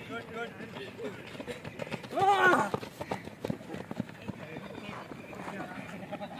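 Men shouting and calling out over running footsteps on dirt, with one loud drawn-out yell about two seconds in.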